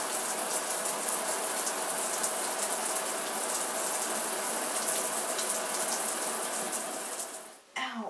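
Shower running behind a closed curtain: a steady spray of water that stops suddenly near the end.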